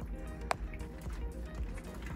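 Background music, with one sharp click about a quarter of the way in.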